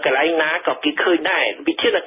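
Speech only: a voice reading a Khmer-language radio news report, talking without pause.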